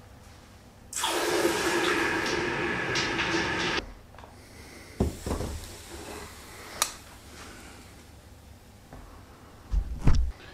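Red-hot steel billet clamp quenched in water: a loud hiss with steady tones that lasts about three seconds and cuts off, then a clunk as the cooled clamp is set back down on the kiln shelf, with a sharp click and another thump near the end.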